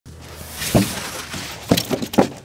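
White rigid foam insulation boards rustling and scraping as they are pushed apart and fall over, with two sharp knocks, one about three-quarters of a second in and one near the end.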